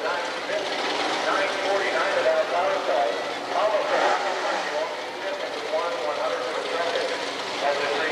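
Drag-racing car engines running at the starting line, their pitch wavering up and down as they are revved, with a voice heard over them.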